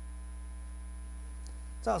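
Steady low electrical hum, with a single spoken word just before the end.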